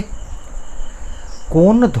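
A pause in the speech filled by a steady high-pitched whine over a low background hum. Bengali speech resumes about one and a half seconds in.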